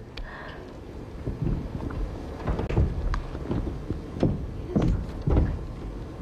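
Footsteps on a studio stage floor: irregular low thumps with a few sharp clicks, about one or two a second, as someone walks up onto the stage.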